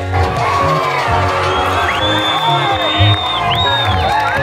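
Music with a steady beat, with a football crowd cheering and whooping over it; long high calls ring out in the second half.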